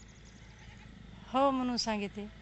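About a second of quiet outdoor background, then a woman's short spoken reply, a drawn-out "ho" (Marathi for yes) that falls in pitch at the end.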